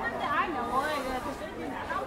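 Passers-by talking: overlapping chatter of several voices close by in a crowded pedestrian street.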